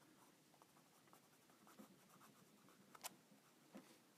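Near silence with faint scratching of a Micron fineliner pen drawing short texture strokes on a sticky note, and one small sharp click about three seconds in.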